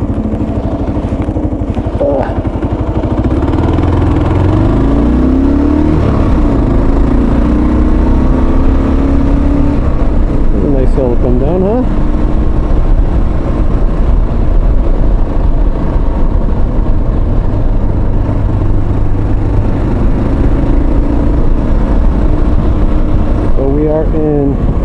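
Motorcycle engine picked up by a mic inside the rider's helmet, rising in pitch as the bike accelerates away a few seconds in, then running steadily at road speed under low wind rumble.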